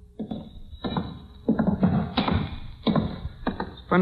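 Radio-drama sound effects of heavy footsteps on wooden boards, about one every two-thirds of a second, and a door being opened. The recording is a narrow-band 1940s radio transcription.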